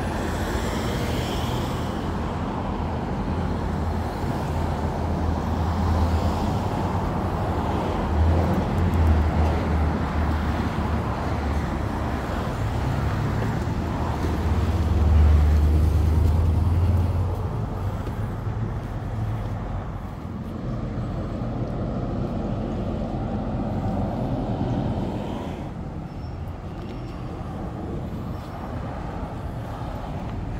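Steady road traffic with a large truck's engine running close by. Its low hum grows loudest about halfway through, then eases off.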